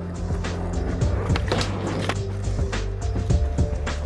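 Skateboard on concrete: wheels rolling with frequent sharp clacks of the board hitting the ground and ledge, over music.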